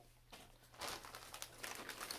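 A plastic shipping bag crinkling as a hand rummages through it. The crackle starts softly and gets busier about a second in.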